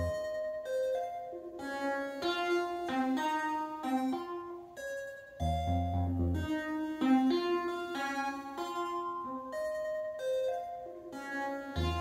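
Buchla modular synthesizer playing a melody of short, bright notes with a low bass note about five and a half seconds in; the phrase repeats roughly every six and a half seconds.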